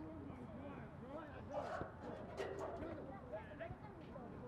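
Several players' voices calling and shouting across an open field, distant and indistinct, with no clear words.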